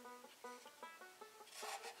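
Faint background music: a plucked string instrument picking a quick run of short notes, about four a second.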